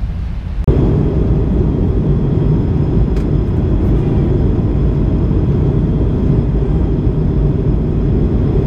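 Wind buffeting the camera microphone: a dense low rumble that starts suddenly about a second in and then holds steady.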